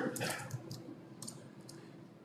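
Keystrokes on a computer keyboard: a handful of light, separate key taps as a debugger command is typed and entered.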